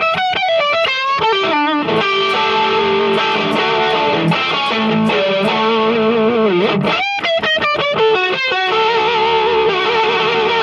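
Red SG-style electric guitar playing lead lines through an Analog Outfitters Sarge amp and Scanner vibrato, with the held notes wobbling in pitch from the vibrato. There are quick runs of notes at the start and again about seven seconds in, with held, bent notes between them, one bending down just before the second run.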